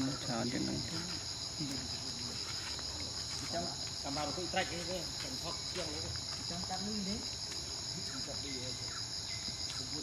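Steady, high-pitched insect chorus, a continuous shrill drone, with faint voices in the background around the middle.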